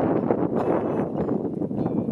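Guitar strummed through a small amplifier, with wind on the microphone.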